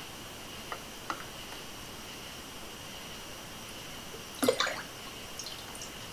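Liquid coffee creamer poured from its bottle into a plastic measuring cup and into a glass jar of cold coffee: a faint trickle over a steady low hiss, with a couple of light clicks about a second in and a short knock about four and a half seconds in.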